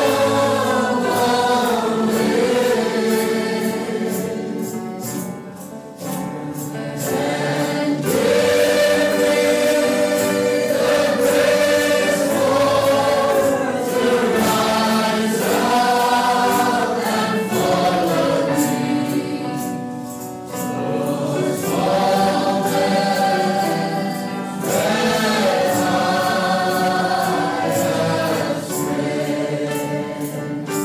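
A choir singing a gospel worship song, in sung phrases with long held notes.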